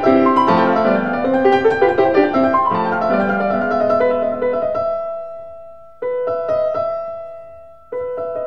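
Background piano music: a flowing run of notes for the first few seconds, then held chords that fade away, with a new chord struck about six seconds in.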